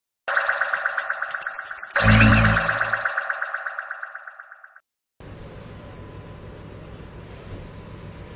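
Electronic logo jingle: a bright tone pulsing rapidly, struck again with a deep bass hit about two seconds in, then fading out. After a short gap, a steady low background noise starts about five seconds in.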